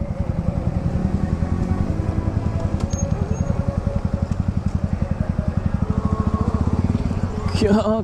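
Motorcycle engine running at low speed, a steady, rapid, even exhaust pulse with no change in pace.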